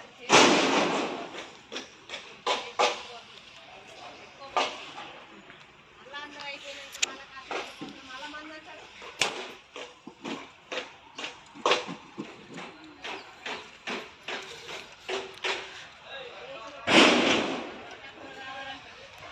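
Work at a building site: voices talking, with irregular sharp knocks and clanks, and two louder rushing bursts about a second long, one just after the start and one near the end.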